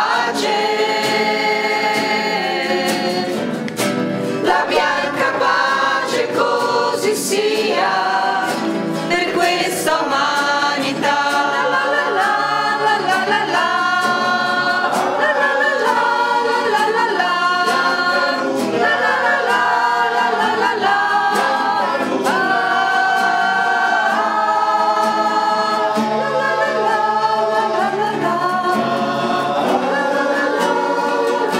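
A group of women singing a traditional Italian Christmas pastorella together, as a small choir.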